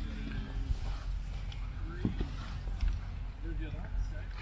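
Indistinct talking from people close by over a steady low rumble, with a few brief faint clicks.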